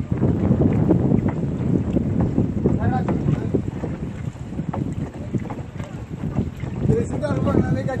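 Water sloshing and churning as a wooden stick stirs it round a plastic drum, with wind buffeting the microphone.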